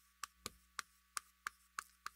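Chalk tapping on a chalkboard as characters are written by hand: a run of short, sharp clicks, about three a second.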